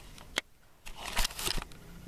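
Camera handling noise: a single click, then about a second in a short burst of crackly rustling and knocks as the camera is moved and set down on the carpet.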